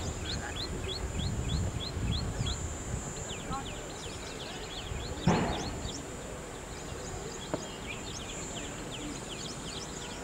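Birds chirping over and over in short, quick downward-sweeping calls, two or three a second, over a steady high hiss. A brief loud rush of noise comes about five seconds in.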